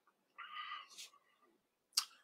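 A short, high cat-like meow lasting about half a second, followed by a brief hiss and a sharp click near the end.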